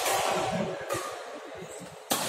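Reverberant noise of an indoor badminton hall during a rally, slowly fading after a racket strike on the shuttlecock.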